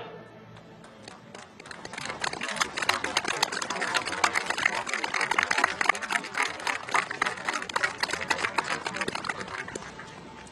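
Large crowd applauding at the end of a piece of music. The clapping builds from about a second and a half in, is strongest in the middle, and eases off near the end.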